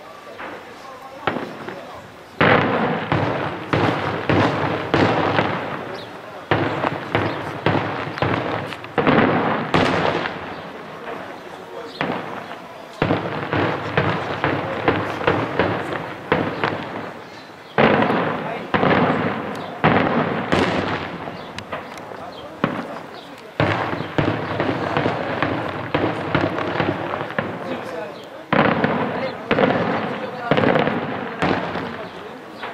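Daytime aerial fireworks: rapid volleys of firecracker bangs and shell bursts crackling overhead. They come in waves of a few seconds each with short lulls between, the first starting about two seconds in.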